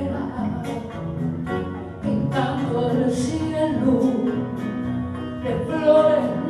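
A woman singing an Argentine folk song live with guitar accompaniment.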